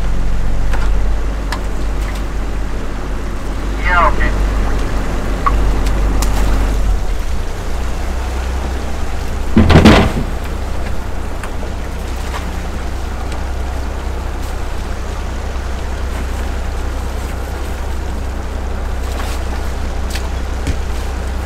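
A fishing boat's engine running steadily on deck, its note changing about seven seconds in. A short squeak about four seconds in, and a loud thump about halfway through.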